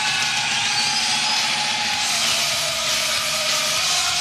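A produced radio sound effect opening a sponsor's goal jingle: a loud, steady hiss with held droning tones, starting abruptly just before and running unchanged.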